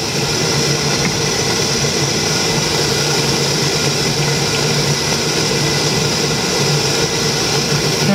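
A fan motor running with a steady whirring hum and a constant low tone.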